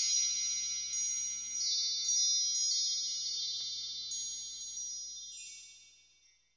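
Chime sound effect: many high bell-like tones ringing together, with small twinkling accents above them, slowly dying away to silence near the end.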